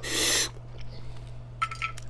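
A short, loud, breathy mouth sound close to the microphone at the start, followed near the end by a few small crackling clicks of eating, over a steady low hum.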